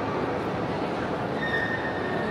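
Shopping-mall ambience: a steady wash of indoor crowd noise, with a thin high squeal in the last half second.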